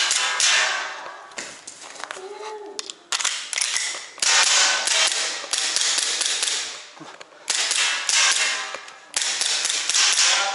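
APS Shark gas-blowback gel blaster pistol fired shot by shot, several times a second or two apart, each shot a sudden burst of noise that dies away over about a second. The pistol is low on gas.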